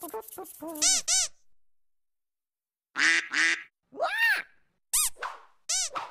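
Duck quacking: a quick run of short quacks, a pause of over a second, then single quacks spaced about a second apart.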